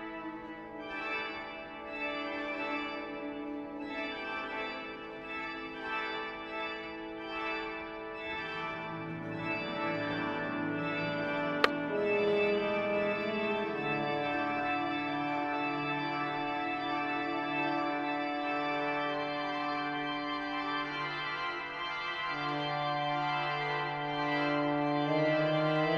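Organ playing long held notes in slowly shifting chords, with lower notes coming in partway through and the sound growing a little fuller. A single sharp click comes about halfway through.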